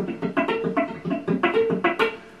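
Telecaster-style electric guitar fingerpicked in a fast, even arpeggio of about six or seven notes a second. The thumb picks the fourth string, the index finger the second string and the middle finger the open high E, which rings through.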